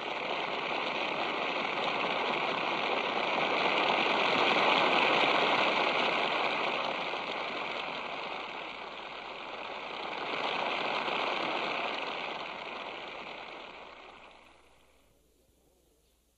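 Concert-hall audience applauding. The clapping swells, eases, rises once more, then dies away about a second before the end.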